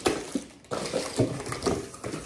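Cardboard packaging and plastic wrap rustling and scraping as parts of a small kitchen appliance are lifted out of their box, with a sharp click at the start and a few light knocks.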